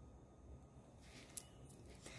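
Near silence: faint room tone, with one soft click a little past halfway.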